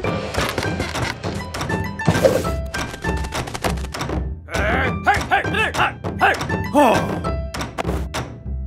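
Cartoon background music with a run of sharp wooden knocks and thunks as a ladder and a pole are set in place, and short cartoon vocal sounds in the middle.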